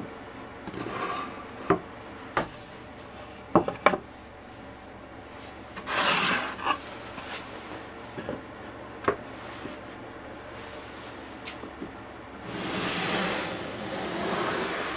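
Plywood panels being slid and set into a dry-fitted shelf box: wood rubbing and scraping on wood, with several sharp wooden knocks, a quick cluster of them about three and a half seconds in. A longer scrape near the end as the box is shifted on the bench.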